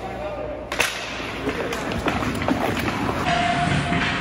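Ice hockey play: sharp clacks of sticks on the puck and ice and skates scraping, with voices in the rink.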